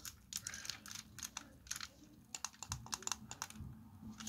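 Light, irregular plastic clicks and taps from a Transformers Masterpiece Grimlock figure's hand and weapon accessory as the accessory is fitted into the hand.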